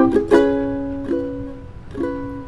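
Ukulele strummed: a quick chord just after the start, left ringing and fading, then a lighter chord about a second in that also dies away.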